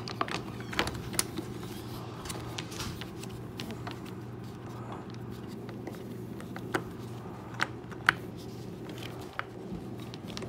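Plastic refrigerator toe grille being handled and pressed into place, giving scattered sharp clicks and knocks of plastic. There are several in the first second, and a few more later on, the loudest about eight seconds in. A low steady hum runs underneath.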